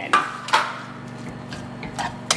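Wire whisk knocking and scraping against a nonstick frying pan while stirring shredded chicken into a thick cream sauce: two sharp clinks in the first half second, then softer stirring over a steady low hum.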